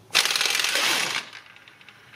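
Air-powered impact wrench hammering on the crankshaft pulley bolt, a rapid rattle of blows lasting about a second, then dying away as the bolt comes loose.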